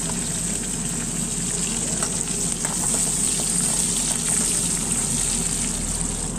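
Sliced onions and chillies frying in hot oil in an aluminium kadai on a gas burner: a steady sizzle.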